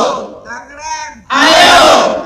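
A large group of people shouting a rallying cry together in call-and-response: a loud group shout fades at the start, a single voice calls out about half a second in, and the whole group shouts back loudly for the last part.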